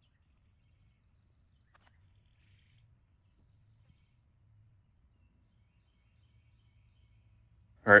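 Near silence: faint low background rumble with one faint tick about two seconds in, then a man's voice starts right at the end.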